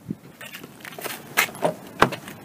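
Footsteps on pavement approaching a car, with sharp clicks, the loudest near the end, as the car's rear door handle and latch are worked and the door opens.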